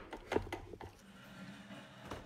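MDF craft box handled and set down on a wooden tabletop: a couple of light knocks about a third of a second in, then only a faint steady hum.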